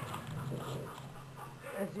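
Brussels Griffon puppies making small, quiet dog sounds, with a woman starting to speak near the end.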